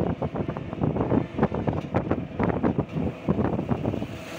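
An e-rickshaw (toto) driving along a road: dense, irregular rattling of the open frame and road noise, with wind buffeting the microphone.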